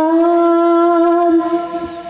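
A singer holding one long, steady, reedy note of a Sundanese wedding chant, fading away near the end.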